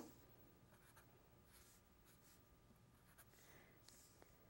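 Faint strokes of a felt-tip marker writing on paper, a few short scratchy sounds scattered through near silence.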